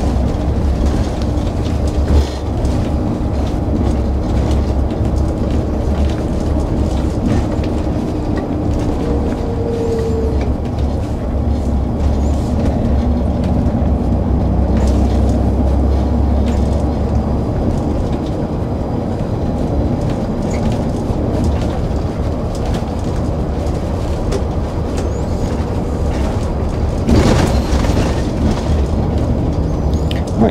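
A coach's engine and tyre noise heard from the driver's seat while driving steadily along a rough lane, with scattered light rattles and knocks from the cab. A brief, louder burst of noise comes near the end.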